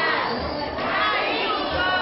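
A crowd of children's voices shouting and cheering all at once, with two short low thumps partway through.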